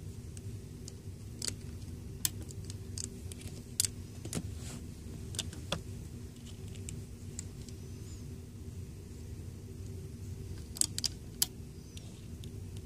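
Rubber bands being stretched over and pressed down onto the plastic pins of a Rainbow Loom: light, irregular clicks and taps, with a quick cluster of sharper clicks near the end, over a low steady hum.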